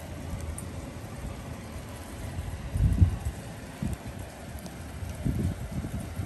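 Steady hiss of small hail pellets falling outdoors, with wind buffeting the microphone in low gusts about three, four and five seconds in.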